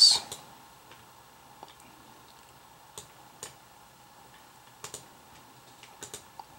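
A few faint, scattered clicks from working a computer, over quiet room tone.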